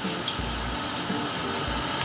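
Mixed seafood, shrimp and clams among it, sizzling steadily in oil and its own juices in a wok, an even hiss.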